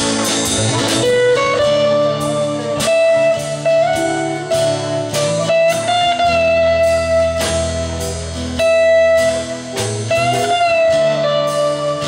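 A live rock band plays an instrumental passage: electric guitar lead with long sustained notes bent and wavered in pitch, over bass guitar and drums.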